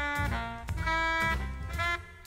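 1962 soul-jazz recording: a saxophone and brass horn section playing held chords in short phrases, changing chord about a third of the way in, over bass and drums.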